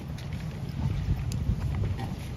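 Wind buffeting the phone's microphone: an uneven, gusting low rumble with a few faint ticks.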